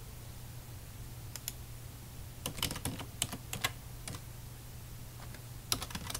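Computer keyboard typing in short scattered runs: two taps about a second and a half in, a quicker run of keystrokes in the middle, and a few more near the end, over a low steady hum.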